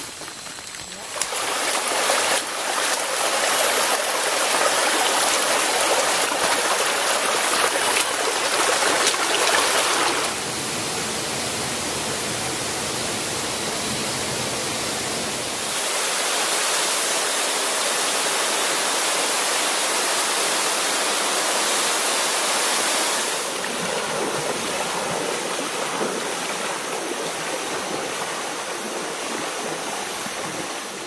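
Rushing water of a forest stream and a small waterfall: a steady, noisy rush that jumps in level and tone several times across the stretch.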